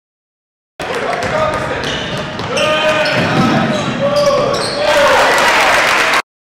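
Basketball game sound in a gym cuts in about a second in: a ball bouncing and squeaks of sneakers on the hardwood court, over voices from the crowd and players. The crowd noise swells near the end.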